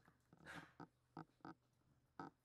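Faint sounds of a Kelpie mix dog eating raw meat and bone from a stainless steel bowl: a longer mouthing sound about half a second in, then three short sharp bites.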